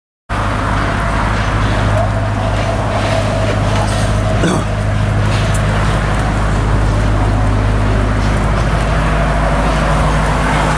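Steady, loud drone of a motor-vehicle engine and road traffic, cutting in abruptly a fraction of a second in and holding unchanged throughout.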